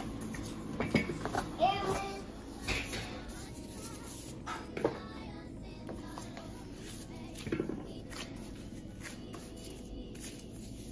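A child's voice in the background, with a few soft knocks and handling sounds as tortilla dough is rolled out with a wooden rolling pin on a plastic cutting board and the pin is set down.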